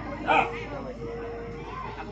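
Background chatter of voices with one short, sharp, loud call about a third of a second in, over a faint steady tone.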